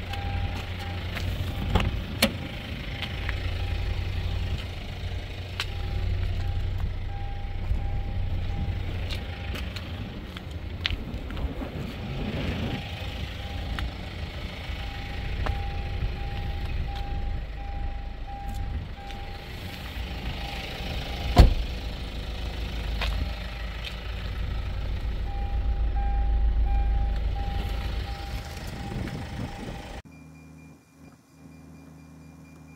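A car's warning chime beeping steadily in repeated runs, over a low rumble and handling noise, with one sharp knock about two-thirds of the way through.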